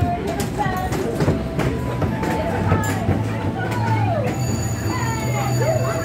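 Carnival midway din: voices calling and shouting over a steady low hum, with scattered sharp clicks. A set of high, steady electronic tones comes in about two-thirds of the way through.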